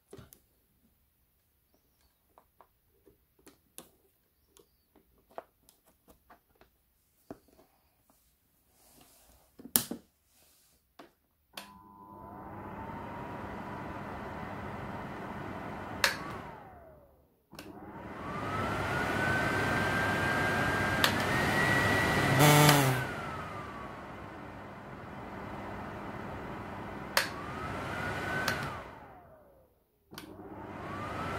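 A four-wire cooker hood blower motor (K42RP2213) is run from its push-button switch block, a test of its new wiring. After a few faint handling clicks it spins up with a rising whine about 12 seconds in. It then switches between speeds, its pitch stepping up and down with a click at each change, stops and restarts once in the middle, and winds down near the end.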